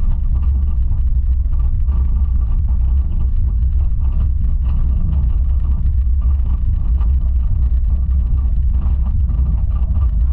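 Steel Eel roller coaster train climbing its lift hill, heard from the front car: a steady low rumble with a faint steady whine above it.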